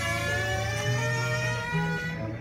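Flamenco-fusion music led by guitar: a held high note over low bass notes that step up in pitch about a second in and again near the end.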